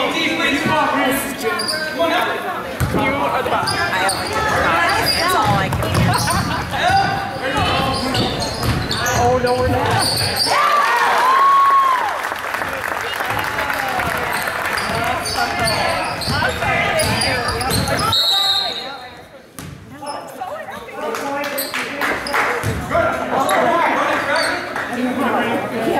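A basketball bouncing on a hardwood gym floor during play, amid indistinct voices of players and spectators echoing in the gym. The sound drops briefly about three quarters of the way through.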